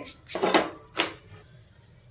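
A rolled paratha being laid onto a lightly oiled non-stick pan: a short soft scrape, then a sharp click about a second in, then quiet.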